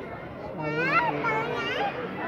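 Voices of people talking nearby, with a child's high-pitched voice calling out, rising and falling, from about half a second in.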